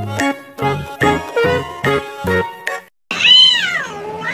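Light background music with plucked notes, broken off by a brief silence; then a Bengal cat gives one loud yowl that rises and falls in pitch.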